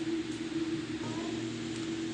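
Steady low background hum over a faint hiss, with no distinct knocks or handling sounds.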